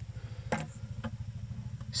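A low, steady throbbing hum with one sharp click about half a second in and a fainter one near the end.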